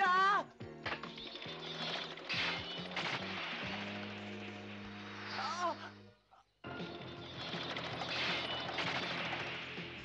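Dramatic cartoon background music over a dense, noisy sound effect, with a short, loud startled cry at the very start and another brief cry about five and a half seconds in; everything drops out for a moment about six seconds in.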